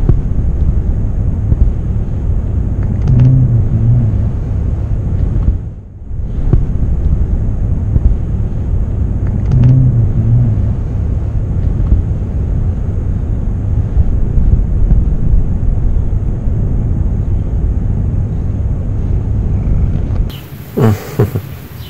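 A loud, steady low rumble that dips out briefly about six seconds in, with two short low pitched sounds rising out of it, about three and ten seconds in.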